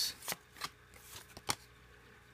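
Paper trading cards sliding and snapping against one another as they are flipped through by hand: a few short, light clicks, the sharpest about a second and a half in.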